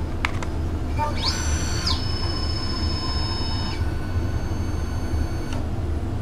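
CNC mill's stepper motor driving the table along an axis: a high whine that rises in pitch over about a second as it speeds up, holds steady, shifts partway through, and stops about half a second before the end. A few light clicks come first, over a steady low hum.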